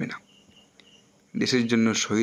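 A man's lecturing voice in Bengali breaks off for about a second, then resumes near the end. In the pause a faint, thin, high-pitched chirping comes and goes in short stretches.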